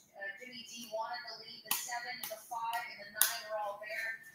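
Faint speech in the background, broken by two sharp hits, like slaps or taps, about a second and a half apart.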